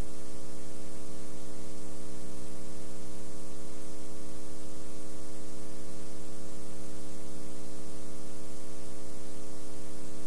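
Steady electrical mains hum with many overtones under an even hiss, unchanging throughout: the noise of a blank stretch of videotape after the recording has ended.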